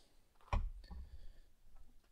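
A single sharp knock about half a second in, then faint small handling sounds.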